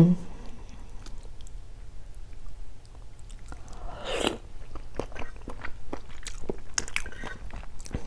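Close-up eating sounds of a balut (boiled fertilised duck egg): a metal spoon clicking lightly against the eggshell as it scoops, a short slurp about four seconds in as the spoonful goes into the mouth, then soft chewing.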